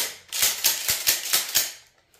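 A Mossberg 590A1 pump shotgun and its sling hardware being handled. It gives a quick run of sharp metallic clicks and rattles over about a second and a half.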